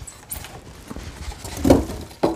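Handling noise from a welding machine being pulled out of its cardboard box: light scuffs and rustles of cardboard and packing, with a louder knock near the end.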